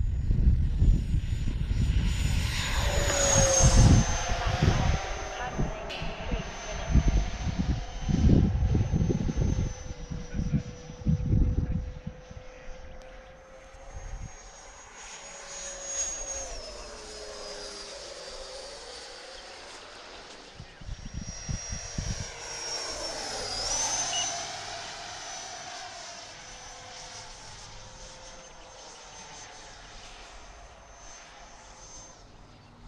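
Electric ducted-fan whine of a 90 mm radio-controlled F-22 model jet in flight. The high steady whine drops in pitch as the jet passes at about sixteen seconds, then dips and rises again near twenty-four seconds before fading. Low rumbling thumps run through the first dozen seconds.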